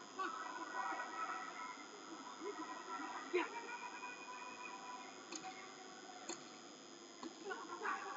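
Boxing-hall ambience with voices calling out from around the ring, and one sharp smack about three and a half seconds in.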